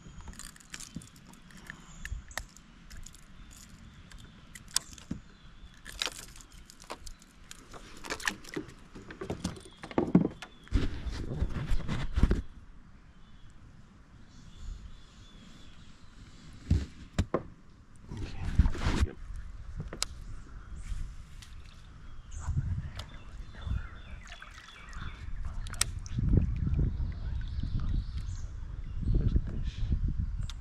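Irregular knocks, bumps and rubbing from moving about in a plastic kayak while handling a caught sunfish, with small water sloshes and splashes against the hull.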